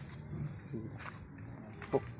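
Quiet outdoor background with faint distant voices, a few light clicks and a faint steady high tone; no chainsaw running.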